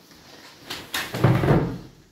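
Two sharp knocks close together, then a dull, low thump: hard parts of a pram's chassis being handled and knocked together.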